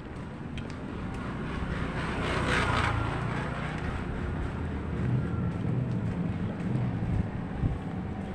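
Street traffic: motor vehicles running past, their noise swelling to a peak between two and three seconds in, with a stronger low engine hum later on.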